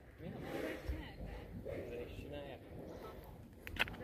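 Faint, soft speech: a man's voice murmuring quietly over low outdoor background.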